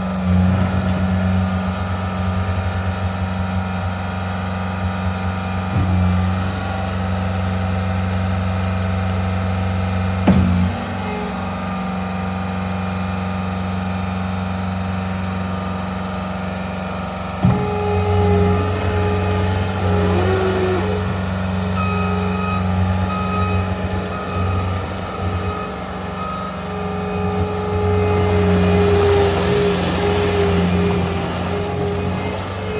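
Caterpillar 249D compact track loader's diesel engine running steadily as the machine drives and turns. A little over halfway through, a higher steady whine joins and the sound gets louder, and there are a couple of brief knocks earlier on.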